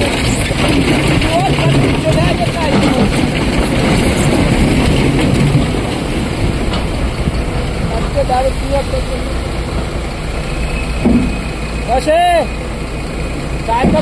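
Diesel engine of a SANY crawler excavator running steadily as it digs and swings to load a dump truck. People's voices come and go over the engine.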